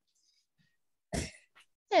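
A person clears their throat once, a short sharp burst about a second in.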